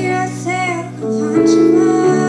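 Music: a young female voice singing over sustained accompaniment chords, the chord changing about a second in.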